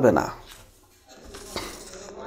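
A man's voice ends a spoken sentence on one short word, then a pause of faint room hiss with a single small click a little past the middle.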